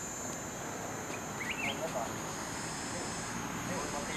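Steady high-pitched insect chorus, with faint distant voices and a few short high chirps about a second and a half in.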